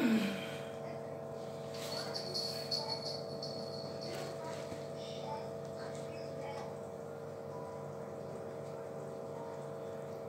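Quiet kitchen room tone with a steady hum, and a few faint rustles and soft taps about two to three seconds in as a cotton tea towel is handled over a batch of bread buns.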